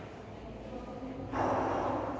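A person drawing a short, sharp breath in, starting suddenly about 1.3 s in after a quiet first second.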